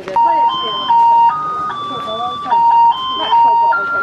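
An electronic jingle: a simple tune of clean, beep-like tones stepping from note to note, each held for a fraction of a second, like an ice-cream-van melody. Voices talk underneath.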